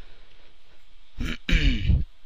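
A man clearing his throat, a short rough burst in the second half after a quiet first second.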